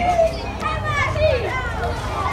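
A crowd of children chattering, several voices overlapping.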